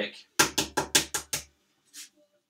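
A boiled egg rapped against a hard countertop six times in quick succession, about five knocks a second, cracking its shell for peeling.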